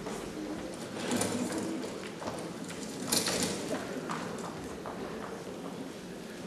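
Crinkling of cellophane bouquet wrapping and handling noise picked up by a handheld microphone, with two louder crackling bursts about one and three seconds in, over faint low voices.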